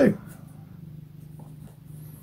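A low, steady background hum with a couple of faint small ticks.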